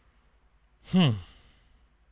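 A man's single short sighing 'hmm', falling in pitch, about a second in; otherwise near silence.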